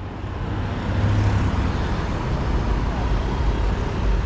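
Street traffic: cars and motorbikes driving past, a steady rumble of engines and tyres, with a heavier low engine rumble about a second in.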